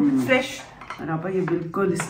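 Spoons clinking against plates and a serving bowl as fruit chaat is dished out, with a few sharp clinks under women's voices.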